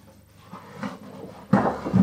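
Cardboard box scraping against the inside of an air fryer oven as it is slid out, with a light knock about midway and a louder scrape in the last half second.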